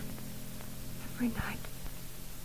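Speech only: a woman's voice briefly and quietly asking a short question, over the faint steady hum and hiss of an old film soundtrack.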